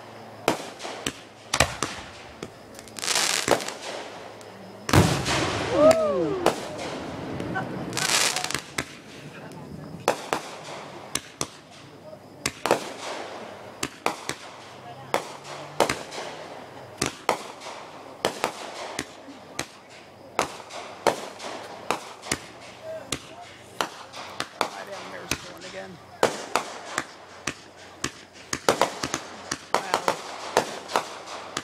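Consumer aerial fireworks going off in quick succession: many sharp pops and crackles throughout, with hissing bursts and a loud bang about five seconds in.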